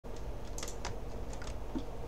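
Computer keyboard keys clicked several times at an irregular pace, over a steady low hum.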